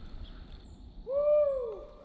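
A single loud animal call about a second in: one pitched note that rises briefly, then falls away over most of a second, over a low rumble of wind or handling noise.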